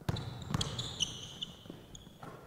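A basketball dribbled on a gym floor, bouncing about every half second, with high squeaks of sneakers on the court.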